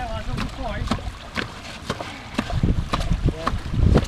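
Wind rumbling on the microphone, with faint talk in the background and repeated sharp clicks and knocks of boots stepping on rock.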